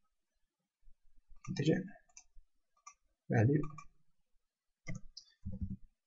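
A few sharp clicks of a computer mouse and keyboard as a value is typed into a field. Two or three short wordless voice murmurs fall in between.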